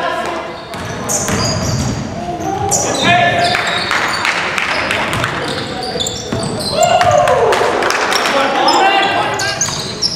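Pickup basketball in an echoing gym: the ball bouncing on the hardwood floor, sneakers squeaking in short high chirps, and players shouting to each other.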